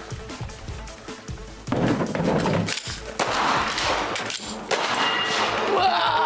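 Background music with loud, sharp bangs of a 9 mm Glock pistol being fired, starting a little under two seconds in.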